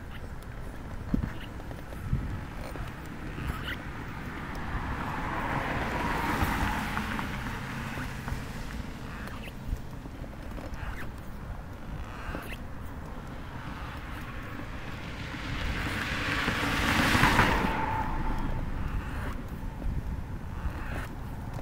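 Two cars passing on the street alongside, each swelling and fading, the louder one about seventeen seconds in, over the steady low rumble of manual wheelchair wheels rolling on a concrete sidewalk, with a few clicks near the start.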